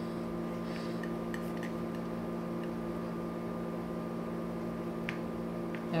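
A steady electrical hum made of several fixed tones fills the room. Over it come a few faint, short scrapes of a metal palette knife working black latex paint on a plastic palette, about a second in and again near the end.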